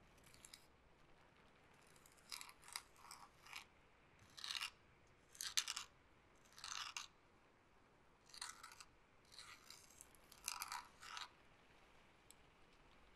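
Close-miked soft brushing or rustling strokes, about a dozen short scratchy swishes in irregular clusters, starting about two seconds in, over near silence.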